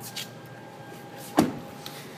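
The driver's door of a 2013 Lexus RX 350 shut with a single solid thump about one and a half seconds in.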